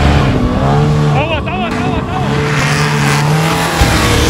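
Off-road trophy truck's engine running hard at high revs as it passes, with a short warbling shout from a voice about a second in.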